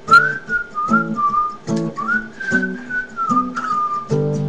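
A person whistling a melody that rises and falls, over acoustic guitar chords struck about once a second.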